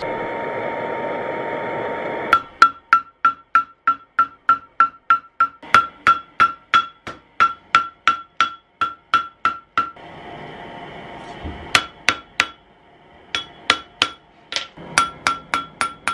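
A small propane-torch firebrick forge running with a steady hiss. Then a hammer beats a red-hot round steel rod on an anvil at about three blows a second for several seconds, each blow ringing. After a brief return of the steady forge noise, a few slower, spaced blows follow near the end.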